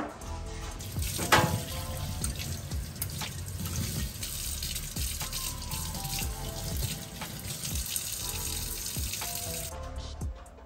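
Kitchen tap running into a stainless steel sink while a small plastic part is rinsed under the stream; the water stops suddenly near the end.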